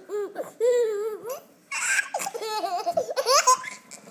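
Baby laughing: a run of short, high-pitched giggles and squeals, with a breathy burst about halfway through and a rising squeal near the end.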